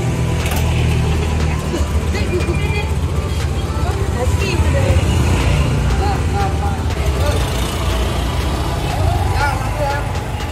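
Motor scooter engines running as riders pull away into street traffic: a steady low rumble. Voices talk over it.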